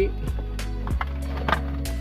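Background music with sustained low notes throughout. Over it come a few sharp clicks and knocks from a plastic wiring connector and wires being handled at a car's ignition-switch harness.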